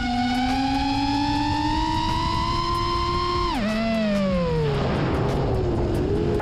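FPV quadcopter's motors and propellers whining in flight, the pitch climbing slowly as throttle is held, then dropping sharply about three and a half seconds in and gliding lower as the throttle is eased off. Rushing wind noise runs underneath.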